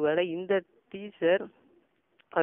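Only speech: a man's narrating voice in two short phrases with a brief pause between them.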